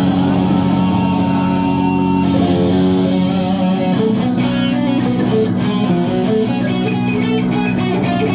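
Live rock band with electric guitar and keyboards. Held chords for the first two seconds, then a quick melodic run of short notes from about two seconds in, over a steady sustained bed.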